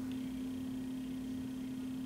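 Room tone in a pause between words: a steady low hum under faint hiss, with a faint thin high whine starting just after the pause begins.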